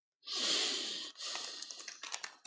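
A close rushing noise on the microphone, like a breath blown onto it, for about a second. It is followed by rustling with small clicks, typical of handling noise as a handheld camera is moved.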